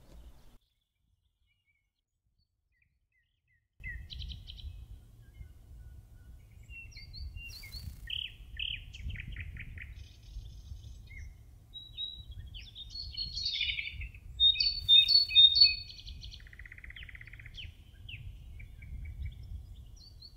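Small birds chirping and singing over a low, steady outdoor rumble, starting after a few seconds of silence; the loudest run of calls comes about fifteen seconds in.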